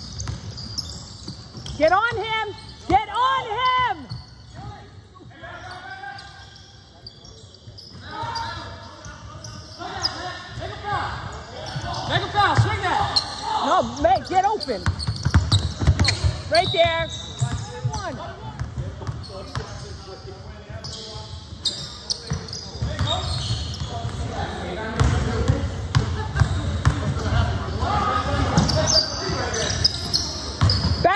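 Basketball game on a hardwood gym court: the ball bouncing as it is dribbled, sneakers squeaking on the floor in short squeals a few seconds in and again around the middle, and players calling out, all echoing in a large gym.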